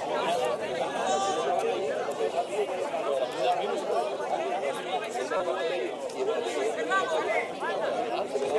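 Indistinct chatter of several spectators' voices talking over one another at a football ground, with no single clear speaker.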